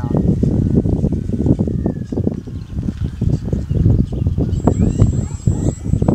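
Wind buffeting the microphone in a gusty low rumble, with the faint whine of an RC plane's electric motor passing and falling slowly in pitch.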